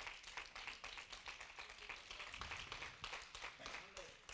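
Congregation clapping faintly, a patter of many irregular hand claps.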